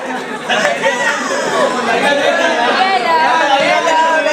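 Many people talking at once in a large room, a lively crowd chatter of overlapping voices.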